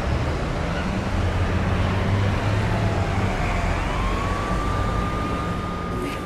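City street traffic ambience: a steady rumble of passing cars, with a faint wailing tone that slides down and then rises and holds through the second half.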